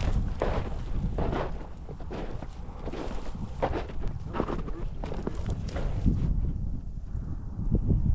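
Wind rumbling on the microphone over a string of short, irregular rustles or breaths about two a second, which thin out after about six seconds.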